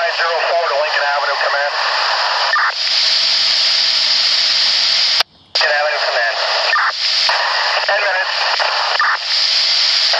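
Fire-department two-way radio traffic heard through a scanner: thin, muffled voice transmissions that are hard to make out, over a constant static hiss. The channel drops out briefly about five seconds in, and then another transmission comes through.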